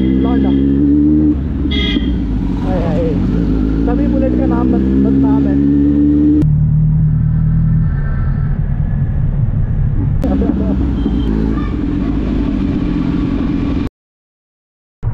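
Kawasaki Z900 inline-four engine running as the bike rides through traffic, its pitch climbing twice as it accelerates. About six seconds in, the sound changes abruptly to a lower, steadier engine note, with voices in the background.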